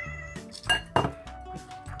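Background music, with a glass bottle of vegetable oil clinking as it is set down on the stone counter about a second in.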